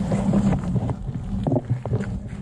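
Motorcycle ridden on a wet gravel road: engine hum and loud wind buffeting on the microphone that come in suddenly at the start, with scattered rattles and clicks from stones.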